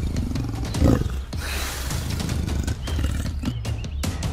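A deep animal growl, loudest about a second in, over a steady low rumble.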